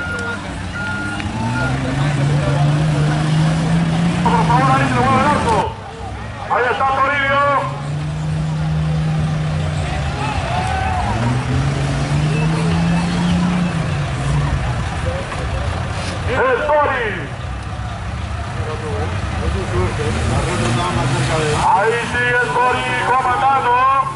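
An off-road Jeep's engine revving hard again and again in deep mud, each rev a slow rise and fall in pitch lasting a few seconds: the Jeep is stuck in the mud pit and struggling to get through. Voices can be heard in between.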